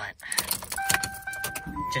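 Car keys jangling and clicking, with a steady electronic tone that starts under a second in and steps up to a higher tone near the end.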